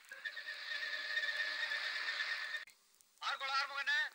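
A steady hiss with a faint held tone that cuts off suddenly about two and a half seconds in, followed near the end by a short, rapidly trembling, pitched call.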